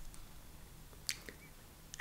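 Quiet, wet, sticky clicks of slippery aloe vera gel pulled off the leaf and lifted to the mouth. There is one sharp click about a second in and a couple of softer ones near the end.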